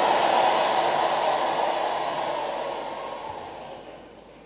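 A large congregation applauding, loud at first and gradually dying away.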